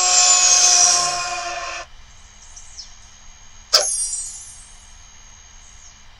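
Cartoon sound effects from an animated video's soundtrack: a loud, sustained effect with several steady tones that cuts off suddenly about two seconds in, then a sharp hit a little before four seconds with a high ringing tail that fades away.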